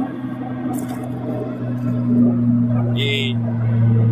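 Low, steady droning hum of highway traffic noise left weird and garbled by noise-reduction filtering, with a short hiss about three seconds in.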